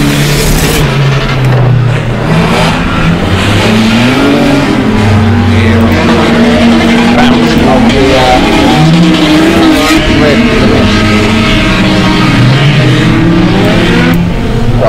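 Several rear-wheel-drive dirt rod race cars running together, their engines overlapping, with revs rising and falling as the drivers power the cars sideways through the corners.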